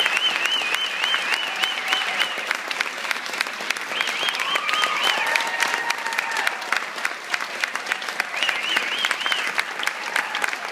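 Audience applauding in a hall, a dense steady clapping. A shrill warbling whistle from the crowd rises and falls over it in three spells: at the start, around four seconds in, and near the end.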